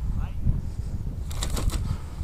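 Wind buffeting the microphone as an unsteady low rumble, with a quick run of clicks a little before the end.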